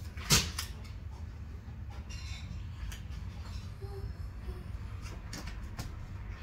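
A toddler blowing into a rubber balloon: one short, sharp puff about a third of a second in, then a few faint clicks over a steady low hum.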